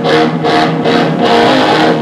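A live rock band playing loudly: electric guitars ring over drums, with a cymbal hit about three times a second.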